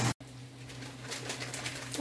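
Handling noise from a phone camera being picked up and moved: faint rustles and light clicks over a steady low hum.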